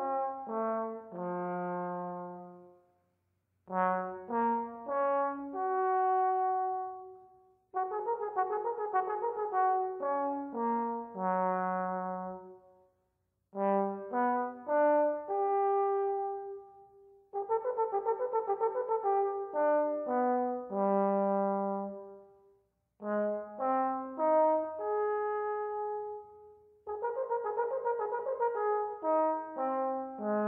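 Solo trombone playing a warm-up exercise in short phrases of a few seconds each, with brief breaths between them. Each phrase runs through quick short notes and settles on held notes, alternately ending low and ending higher.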